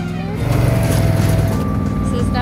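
ATV engine running, getting louder about half a second in, with background music playing over it.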